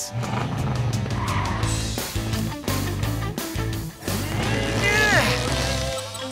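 Animated monster truck's engine sound effect running and revving as it drives off pulling a bungee cord taut, over background music. There is a short squealing sweep in pitch about five seconds in.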